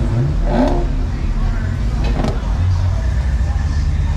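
A car engine revs up briefly about half a second in, its pitch rising, over a steady low rumble with voices in the background.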